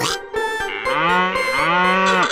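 Cartoon cow-moo sound effect: two long, drawn-out moos, the second slightly longer. A quick whoosh comes at the very start, and background music plays underneath.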